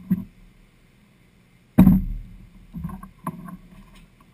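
Hollow thumps and knocks on the bare fiberglass floor of a boat hull, one much louder than the rest about two seconds in with a short low ring, followed by a few lighter knocks; the grinder is not running.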